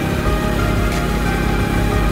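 Background music with held notes and a sharp hit about a second in.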